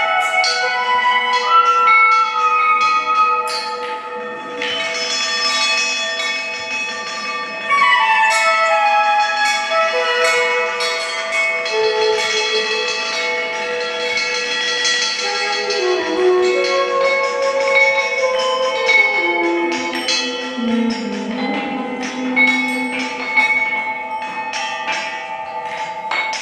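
Improvised music on hand-cast bronze bells, struck again and again so that their ringing tones pile up and overlap. From about two-thirds of the way in, lower wavering tones join underneath.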